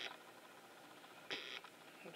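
Camcorder zoom motor whirring in a short burst of about a third of a second in the middle, as the lens zooms in; otherwise quiet room tone.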